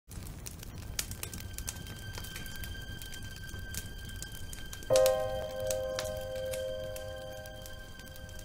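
Crackling campfire sound effect, a low rumble dotted with sharp pops and snaps, under intro music: a thin high held tone comes in about a second in, then a deeper sustained note enters sharply about five seconds in as the loudest sound and slowly fades.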